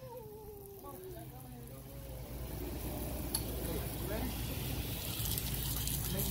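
A faint, drawn-out voice falling in pitch over the first two seconds, over a low steady rumble.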